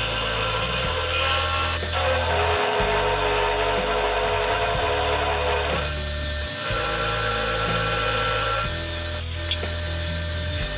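Milling machine with an end mill cutting a channel in a solid aluminum block: a steady machine whine, its low tone shifting every two or three seconds as the cut goes on.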